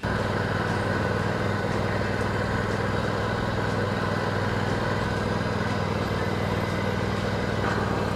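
A riding lawn tractor's engine running at a steady speed as it tows a spike aerator-seeder across a lawn.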